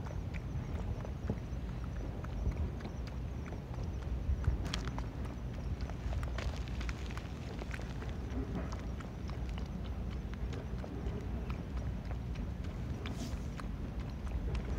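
Raccoon dog (tanuki) lapping water from a puddle: a run of small, irregular clicks as it drinks, over a steady low rumble.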